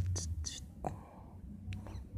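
A man whispering faintly under his breath in short, breathy snatches, with a few small mouth clicks.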